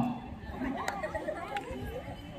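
Quiet murmur of many young voices chattering at once in the background.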